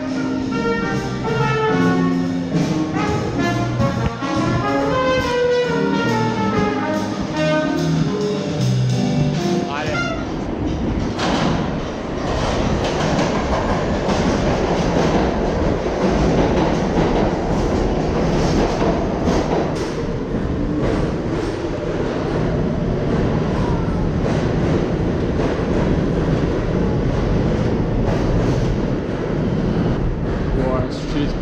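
Music with brass-like notes for about the first ten seconds. Then a subway train's steady loud rumble and rail noise as it runs past the platform.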